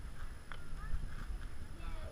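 A single sharp click about half a second in, a putter striking a golf ball, over low rumbling and thumping handling noise on the camera microphone, with faint children's voices in the background.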